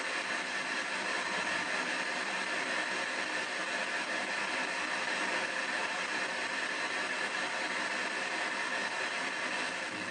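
P-SB7 ghost box sweeping through radio frequencies, giving a steady hiss of static with no clear words in it.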